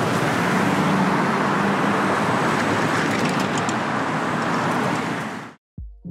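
Steady city street traffic: cars and a bus running along the road, with the low hum of engines under the noise of tyres. It fades out quickly near the end.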